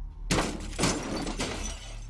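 Glass shattering and breaking in a sudden loud burst, with three strong hits about half a second apart and debris carrying on between them.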